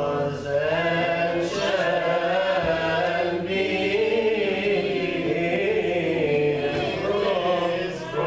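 Coptic Orthodox liturgical chant: voices singing a slow, winding melody without break, with a short breath pause just before the end.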